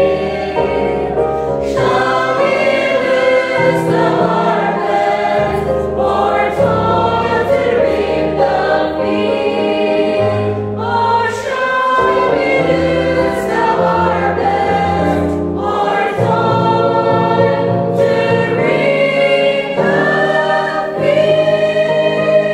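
Mixed choir of men and women singing a gospel hymn in parts over accompaniment with sustained bass notes, reaching the refrain "Shall we lose the harvest, or toil to reap the field".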